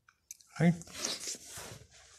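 Computer keyboard keys being tapped: a few quick clicks in the first half second as a command is typed.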